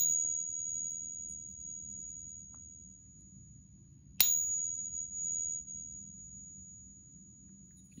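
A brass counterfeit Morgan dollar (copper and zinc), held in a coin-pinging clip, is tapped with a wooden stick at the start and again about four seconds in. Each tap gives one high, pure ring that lasts for seconds. Such a long ring is typical of an alloy rather than a pure metal.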